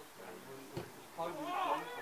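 A football being kicked with one dull thud as a free kick is struck, followed about half a second later by a long shout whose pitch rises and falls.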